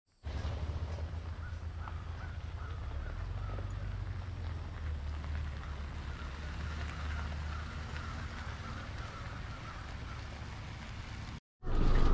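Wind buffeting the microphone, a steady low rumble with faint short high chirps through it. It cuts off near the end.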